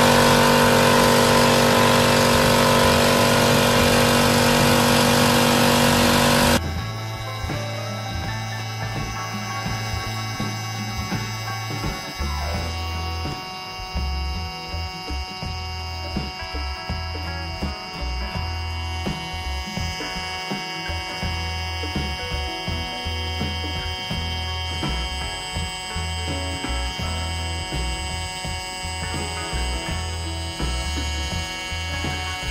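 A 2.0 HP direct-drive air compressor starts running loudly and steadily as it is switched on, then cuts off suddenly about six and a half seconds in. After that there is background music with a steady beat.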